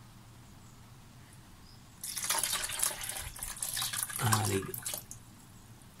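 Water from a plastic tub of mouldy food poured into a bucket of liquid, splashing for about three seconds, starting about two seconds in.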